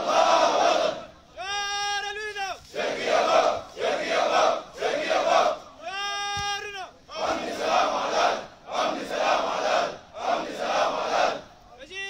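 Military drill call and response: one voice gives a long drawn-out shouted call, and a formation of soldiers answers with a series of short, loud shouts in unison. The pattern comes twice, with the calls about two seconds and about six seconds in.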